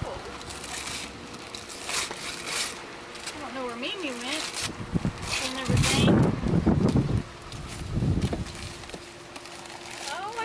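Gift wrapping paper being torn and crumpled by hand, a series of short crackling rips, with a brief voice partway through.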